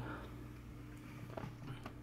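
Quiet room tone with a faint steady hum and two faint light clicks in the second half.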